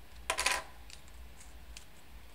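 A short clatter a quarter of a second in, as a small hard part is set down on a desk, then faint clicks as laser-cut wooden pieces are handled.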